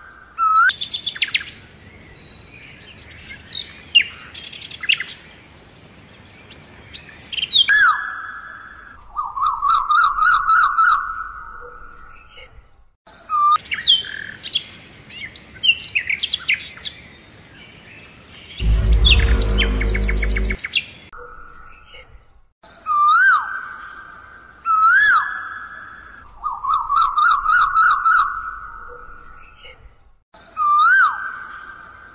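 Forest bird calls: repeated rising, hooked whistles and a fast trill that come back in the same sequence, as if looped. Past the middle comes a loud, deep, pulsing call about two seconds long.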